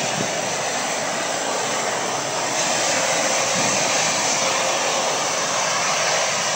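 Ocean surf breaking on a sandy beach, a steady rushing noise with no pauses.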